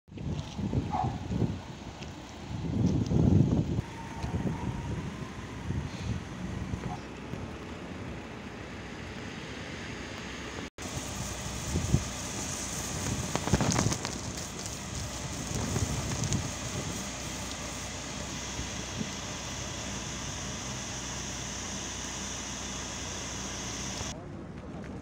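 Outdoor street ambience: wind buffeting the microphone and traffic noise, with uneven louder gusts and rumbles early on and again about halfway through, and a brief cut-out just before the midpoint.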